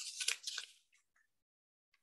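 Near silence: a faint, brief hiss-like noise in the first half-second, then complete silence.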